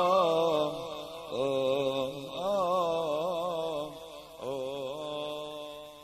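A male tarab singer holding long, ornamented notes without words, with wavering, gliding pitch, in four phrases that fade out near the end.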